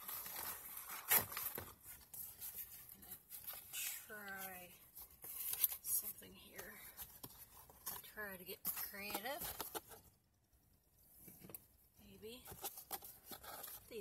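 Clicks, knocks and rustling from handling a flashlight as it is set up and repositioned. A woman's voice murmurs briefly about four seconds in and again about eight seconds in.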